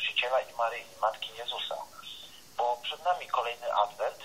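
Speech over a telephone line, thin and narrow-sounding, with a short pause about halfway through.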